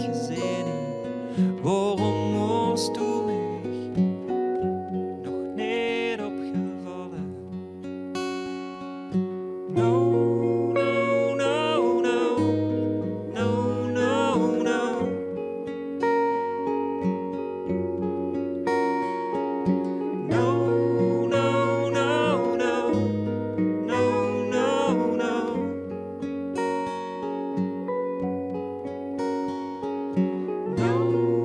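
Live band music: acoustic guitar playing chords over sustained bass notes, with a melody line that wavers with vibrato above them.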